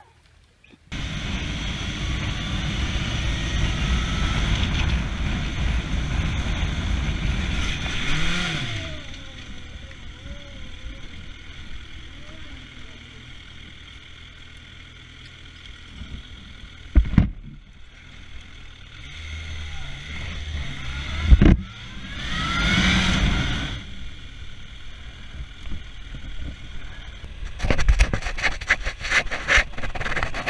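Motorcycle running, heard through heavy wind noise on a helmet-mounted camera, with a few brief voices and two sharp knocks. Part way through it rises briefly in pitch as if revving.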